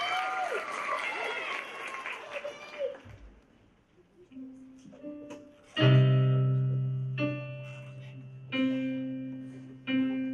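Applause and a few voices die away over the first three seconds. Then a Casio digital keyboard played through a small amplifier gives a few soft notes, and from about six seconds in, low sustained chords are struck roughly every second and a half, held with the sustain pedal.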